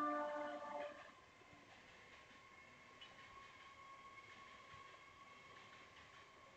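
A horn sounding a chord of several steady tones, loudest in the first second, then fading to a faint, steady tone that holds on.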